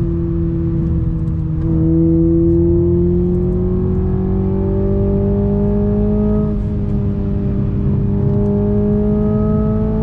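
Toyota Supra 2.0's turbocharged inline-four heard from inside the cabin while driving, its note rising slowly and steadily under throttle. It swells louder a couple of seconds in and eases slightly past the halfway point before carrying on rising.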